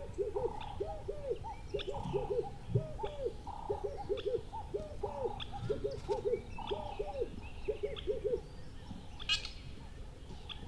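An owl hooting in a quick run of short, arched notes, several a second in twos and threes, dying away near the end. Small birds chirp thinly in the background, with one brighter chirp near the end.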